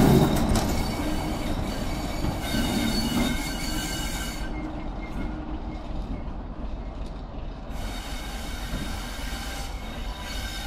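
Class 33 diesel locomotive moving slowly away along the track, its Sulzer eight-cylinder engine running under high wheel squeal that comes and goes. The sound fades as the locomotive draws away.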